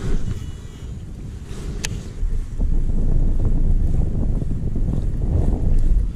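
Wind buffeting the microphone: a low, uneven rumble that gets louder about halfway through, with a single sharp click just before the two-second mark.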